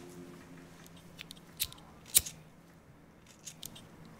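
Pocket lighter being struck to light a cigarette: a few sharp clicks, the loudest about two seconds in, with smaller clicks before and near the end.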